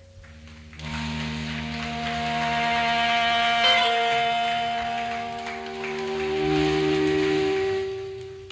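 Live band jam playing long, sustained held chords of several notes at once. The sound swells in about a second in, changes chord partway through, and fades near the end.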